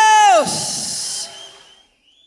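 A voice holding a high, steady note that slides down in pitch and stops about half a second in, followed by a short hiss that fades away to silence.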